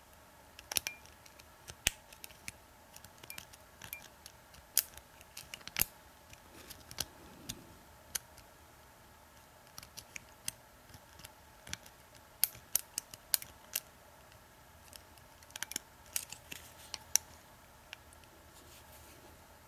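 A lock pick and tension wrench working the pin tumblers of an American 5360 hidden-shackle padlock: irregular small metallic clicks and scrapes of the pick in the keyway, coming in clusters.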